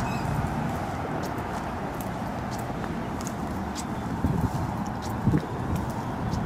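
Footsteps of a person walking on pavement, about two steps a second, over a steady background noise, with a couple of heavier bumps near the end.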